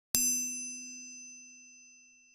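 Logo-reveal sound effect: a single bell-like ding struck just after the start, ringing on in one low and several high steady tones and fading slowly.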